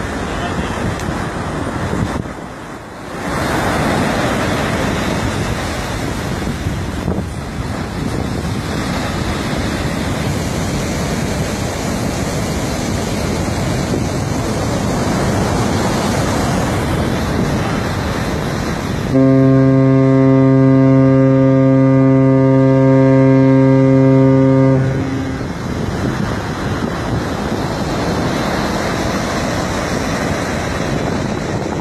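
Surf breaking on the beach with wind on the microphone, then a large cargo ship's horn sounds one long, deep blast of about six seconds, starting about two-thirds of the way in.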